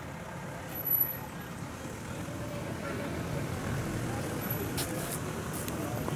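A motor vehicle engine running nearby, a steady low rumble that swells slightly in the middle, with faint voices in the background.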